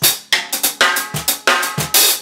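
A quick groove on a small acoustic drum kit played with sticks: a PDP Concept birch snare and Sabian SR2 hi-hats, with a cajon serving as the kick. Rapid snare and hi-hat strokes run throughout, with deep kick thumps near the start, a little past a second in, and near the end.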